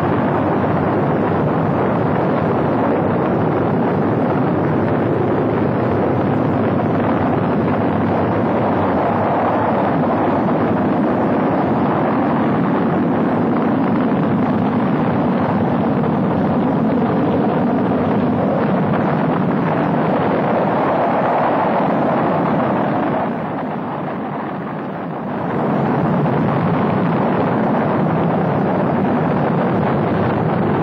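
Saturn V rocket's five F-1 first-stage engines firing at liftoff: a loud, steady, dense rumble that dips briefly about 23 seconds in, then comes back to full strength.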